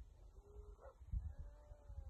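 A dog whining faintly: a short thin whine about half a second in, then a longer one that rises and falls. Low rumbling thumps run underneath.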